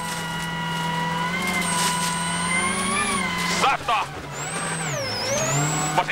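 Ford Focus RS WRC's turbocharged four-cylinder engine, heard from inside the cabin, held at high revs flat out. About five seconds in the revs drop sharply as the driver lifts and shifts down, then rise again.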